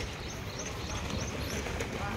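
Faint, short bird chirps, several of them spread through the moment, over a steady low outdoor rumble.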